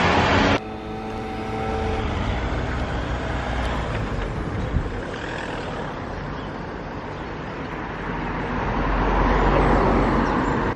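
Road traffic with cars driving by. A car passes close near the end, the loudest part.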